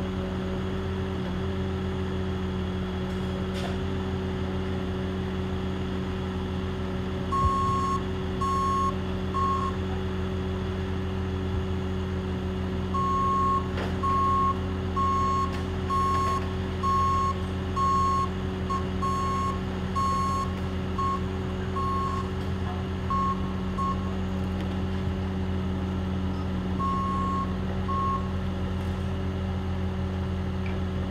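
Bobcat tracked loader's engine running steadily while its reversing alarm beeps in spells: three beeps about a quarter of the way in, a long run of about two beeps a second through the middle, and two more near the end.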